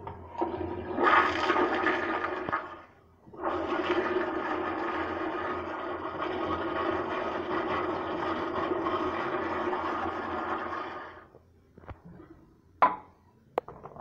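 American Standard toilet flushing. A first rush of water lasts about three seconds and breaks off briefly. A steady rush then runs for about eight more seconds and fades out, and two sharp clicks come near the end.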